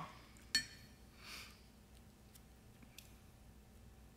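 A single sharp clink of a small hard object against a table about half a second in, followed a moment later by a soft breath of air. The rest is a quiet room with a few faint ticks.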